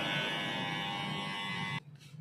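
Cordless electric beard trimmer buzzing steadily as it trims the beard, cutting off suddenly near the end.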